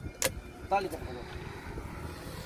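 A steel ladle clinks once, sharply, against a steel cooking pot about a quarter second in, over a steady low rumble of road traffic.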